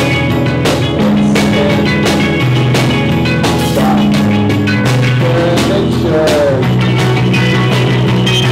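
Live indie rock band playing: electric guitars and bass holding notes that change about once a second over steady drum-kit hits, with a note bending in pitch around five to six seconds in.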